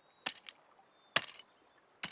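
Cartoon beaver's flat tail smacking the water in an even beat, a sharp slap about once a second, kept at a steady tempo without speeding up or slowing down.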